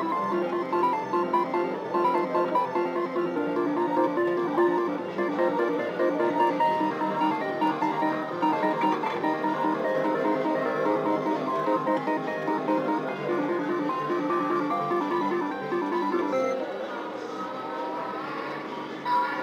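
Slot machine's bonus-round music: a quick, repeating melody of short pitched notes that plays while free-game wins are tallied on the win meter, thinning out near the end.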